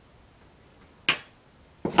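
A big metal washer set down on a wooden workbench, a single sharp clink with a short ring about a second in.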